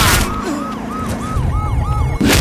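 A sharp impact at the very start, then a police car siren in a fast yelping wail, about four rises and falls a second.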